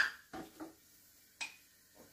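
A single short, sharp clink of a spoon against a glass jar of seasoning paste, about a second and a half in, over quiet kitchen room tone; a short spoken word near the start.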